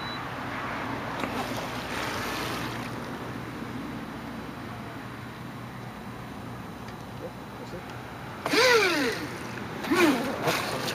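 Steady background noise of the open shoreline, then near the end a person's short vocal exclamation that falls in pitch.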